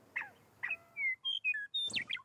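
Scaled quail calling: two short calls in the first second, each a quick falling note running into a held tone. From about a second in comes a quick run of short, higher whistled chirps.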